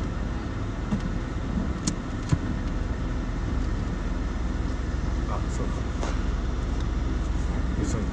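Steady low hum of a car heard from inside the cabin, the car running at low speed, with a few faint clicks.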